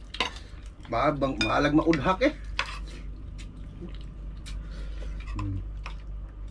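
Spoons and forks clinking and scraping against plates and bowls as several people eat, a scatter of short sharp clinks. A person's voice is heard for about a second and a half near the start.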